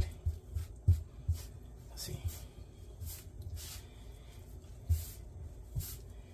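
Hands mixing flour into wet egg and butter on a stone countertop to start a bread dough: irregular soft rubbing and scraping with a few low thumps.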